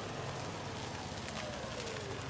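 Small gas engine of a Club Car golf cart running steadily as the cart rolls slowly up on concrete.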